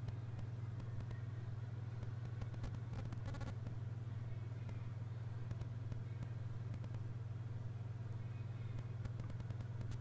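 A steady, unchanging low hum under faint room noise.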